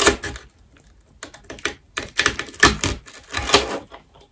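Brittle dalgona sugar candy being picked apart with a needle, cracking and snapping in a string of sharp, crisp clicks. One loud crack comes right at the start, lighter clicks follow, then denser, louder clusters of snaps in the second half.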